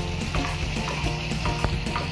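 Coriander and cumin seeds dry-roasting on an iron tawa, stirred with a wooden spoon: a steady sizzling scrape with small clicks of the seeds against the iron. Soft background music plays under it.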